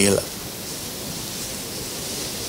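A man's voice breaks off right at the start, then a steady, even hiss of background noise fills the pause.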